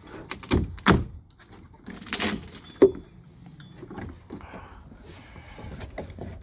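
Rotten wooden deck boards being pried up with a long-handled steel deck wrecker bar: a few knocks of the tool against the wood in the first second, a noisy crack of splitting wood about two seconds in, and a sharp knock just before three seconds, then quieter handling noise.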